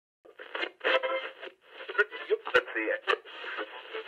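Snatches of voice heard through a thin, radio-like sound with no depth, broken by short gaps and three sharp clicks, as in a radio sound effect.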